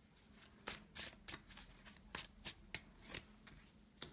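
Oracle cards being handled: several short, sharp card swishes and slaps, irregularly spaced, as the deck is shuffled and a card is laid down on the cloth-covered table.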